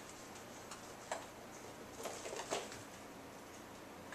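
Light taps and scuffles of a cat playing with a toy mouse, pouncing and batting it about: a single tap about a second in, then a short cluster of taps between two and two and a half seconds.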